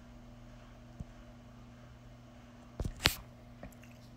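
Low steady hum with a faint click about a second in, then two sharper clicks close together near the three-second mark and a softer one just after.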